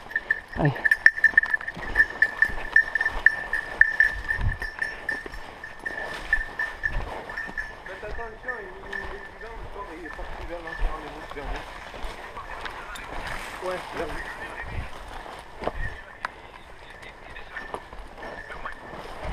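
Footsteps and crackling brush as someone pushes quickly through dense forest undergrowth, with irregular knocks and snaps. A thin, steady high pulsing tone runs beneath it and fades in the second half.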